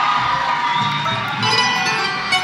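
Audience cheering while an estudiantina string ensemble of guitars and mandolins strikes up the song's next section. The plucked notes come in about a second in and fill out near the end.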